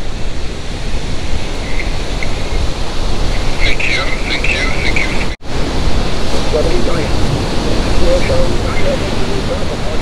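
Steady noise of surf and wind on the microphone, with faint voices coming and going. About five and a half seconds in, the sound drops out for an instant at an edit.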